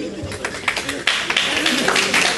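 Audience applauding: scattered claps that build into steady applause about a second in.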